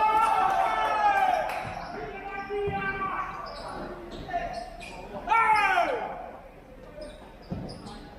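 Futsal players shouting to each other: a long call over the first two seconds and a shorter falling shout about five and a half seconds in. Between them come a few thuds of the futsal ball being kicked on the court.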